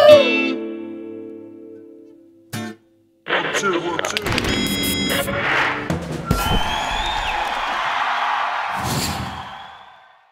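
A last sung note cuts off over a Squier electric guitar chord, which rings on and fades away over about two seconds. After a brief gap, a produced outro sting begins: a dense whooshing swell with music, fading out near the end.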